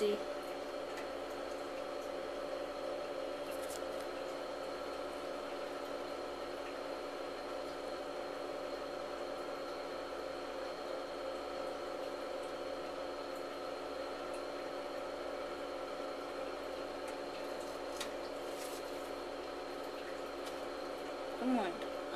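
A steady electrical hum of several fixed tones, with a few faint clicks in the middle and near the end.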